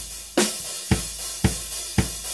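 Drum kit playing a steady beat: a heavy drum stroke about twice a second over a continuous cymbal wash.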